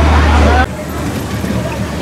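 Voices and crowd chatter at a bumper-car rink over a loud, steady low hum that cuts off abruptly less than a second in, leaving quieter background chatter.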